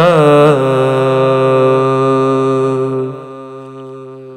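Male voice singing an Urdu naat a cappella: a short wavering ornament, then one long, steady held note that drops to a quieter sustained tone about three seconds in.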